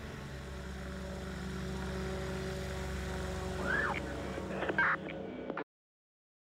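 Sustained low droning tones of a title-sequence soundtrack, with two short sliding high sounds near the end, then an abrupt cut to silence shortly before the end.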